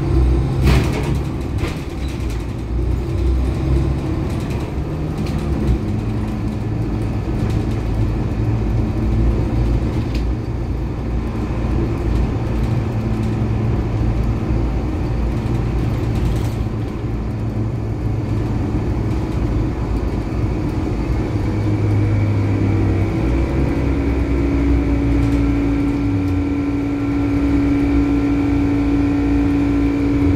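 Inside a Volvo B12BLE diesel city bus under way: the engine and drivetrain running with road rumble, the engine note shifting as the bus changes speed. A couple of sharp rattles come near the start and around the middle, and a steady hum joins in for the last several seconds.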